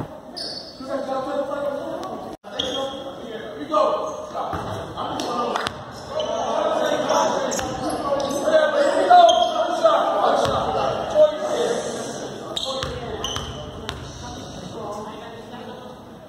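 A basketball bouncing a few times on a hardwood gym floor, amid the echoing chatter of players and spectators in a large gymnasium.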